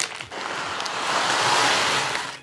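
Dry aquarium soil granules (Tropica Aquarium Soil) poured from a bag into a glass aquarium: a steady rushing hiss that starts a moment in and grows a little louder.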